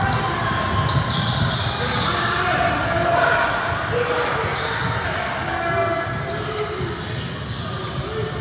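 A basketball dribbled on a hardwood gym floor, with indistinct voices of players and spectators around it in a large gym.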